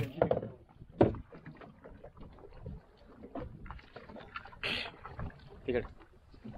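Handling noise aboard a small fibreglass fishing boat: one sharp knock about a second in, then quieter scattered taps and rustling, with a short burst of noise near five seconds.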